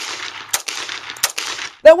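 .45 pistol firing hollow-point rounds: two shots about 0.7 s apart, about half a second and a second and a quarter in. Each shot trails off in an echo that carries on into the next.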